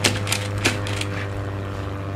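A steady, low airplane-engine drone for a red plastic toy biplane taking off. A few sharp clicks and rattles fall in the first second or so.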